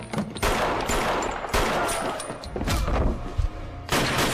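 Film-soundtrack gunfire: three loud gunshots about a second apart, each ringing out with a long echo, and another starting right at the end.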